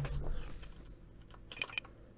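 Computer keyboard typing: a dull low thump at the start, then a few separate keystrokes, with a quick run of them about one and a half seconds in.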